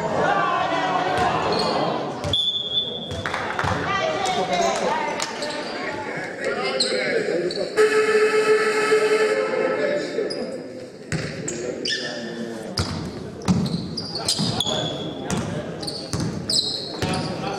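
Basketball game in an echoing sports hall: players' shouts and the ball bouncing. A short high whistle blast comes about two and a half seconds in, and an electric horn sounds steadily for about two seconds near the middle.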